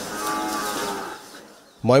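A cow mooing once, one long call that fades out about a second and a half in.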